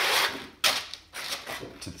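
Abrasive sanding sheets for a floor sander being handled and flipped through: a papery rustle, then a sharp slap about half a second in, followed by a few lighter clicks.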